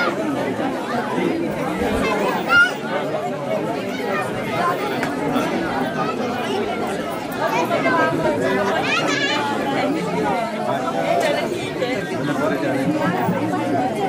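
Crowd chatter: many people talking at once, with one short loud sound about two and a half seconds in.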